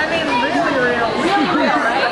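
Several people talking at once: overlapping conversation and background chatter, with no other distinct sound.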